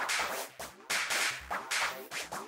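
Psytrance track in a sparse passage: short, sharp bursts of hissing synth noise, about three in two seconds, each fading quickly, with a single kick drum about three-quarters of the way in.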